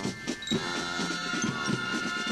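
Marching show band playing: sustained brass notes over a steady drum beat.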